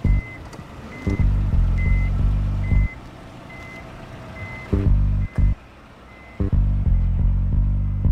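A short high electronic beep repeating a little more than once a second, about eight times, growing fainter and dying out after about six seconds. Under it, deep bass notes of soundtrack music come and go.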